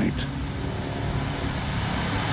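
A low, steady rumbling drone.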